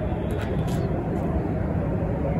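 Steady low rumble of wind against the microphone, with faint voices in the distance.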